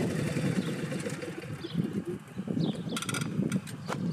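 John Deere riding lawn tractors running at idle, a rough low hum, with a few sharp clicks about three seconds in and again near the end.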